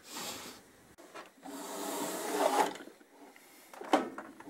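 Steel tool chest drawer sliding on its metal runners: a short scrape at the start, then a longer slide that builds and stops about two and a half seconds in, and a sharp click just before the end.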